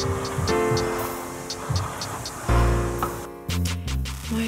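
Background music: sustained chords changing every second or so over a light, steady ticking beat.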